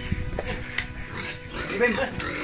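A pig in its pen grunting briefly near the end, over low rumbling and a couple of light knocks.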